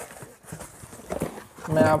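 Cardboard shipping box being handled, with rustling, scraping and a string of light taps and knocks as the contents are pulled out. A short spoken word comes near the end.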